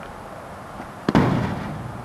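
A small football thrown against a garage door: one sudden loud bang about a second in, with the door ringing on briefly as it dies away.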